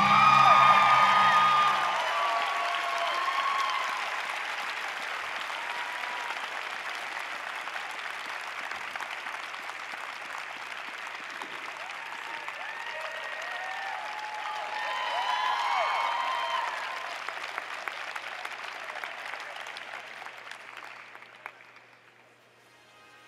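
Arena audience applauding at the end of a figure skating program, with scattered cheers. Loudest at the start, it swells once more about two-thirds of the way through and fades out near the end.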